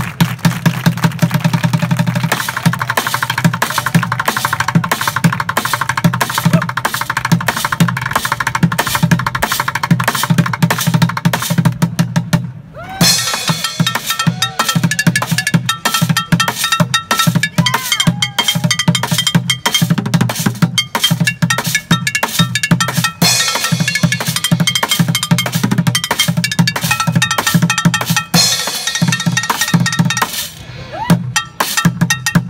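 Bucket drumming: rapid stick strokes on upturned plastic buckets, a cymbal and held-up metal pots, in a dense, fast roll. The playing breaks off briefly about twelve seconds in, then resumes with ringing metallic tones among the strokes.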